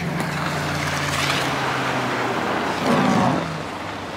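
Pickup plow truck's engine idling steadily under a broad rush of noise, with a person's sigh at the start. A short sound with a bending pitch comes about three seconds in.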